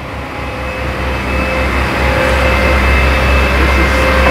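Steady low mechanical rumble with a faint steady whine above it, growing louder over the first two seconds.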